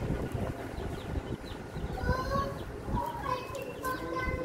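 A kitchen knife slicing shallots by hand, with small irregular cutting and handling knocks. Short high calls sound in the background about two seconds in and again near the end.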